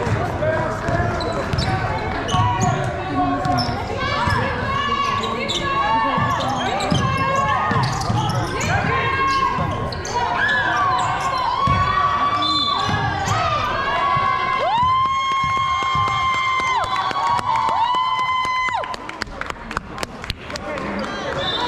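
A basketball game being played on an indoor court: a ball bouncing and feet knocking on the floor throughout, with sneakers squeaking on the court in the second half, a couple of the squeaks long and drawn out. Voices can be heard among the game sounds.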